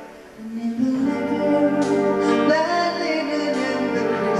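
Wind band playing live: after a brief lull at the very start, the band comes back in with held chords.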